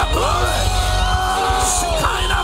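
Live worship music with a steady low keyboard drone, over which a man's amplified voice holds one long sung note from just after the start, dipping slightly near the end.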